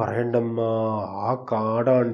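A man's voice speaking in a drawn-out, sing-song way, holding long steady notes on his vowels, with a short break about one and a half seconds in.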